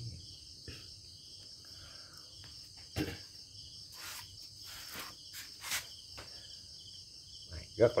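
Steady high-pitched insect chirring in the background, with a few sharp clicks and knocks about three to six seconds in.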